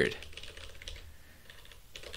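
Typing on a computer keyboard: a few faint keystrokes.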